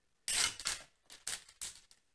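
A thin cutter wire with a brass end being picked up and handled: a few short scraping rustles, the loudest about a quarter-second in.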